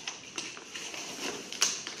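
A cardboard box lid being closed and the box handled on a table: a few light taps and knocks, the sharpest about one and a half seconds in.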